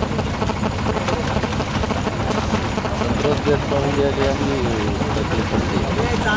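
A boat engine running steadily, with a constant low drone. Voices talk over it for a couple of seconds in the second half.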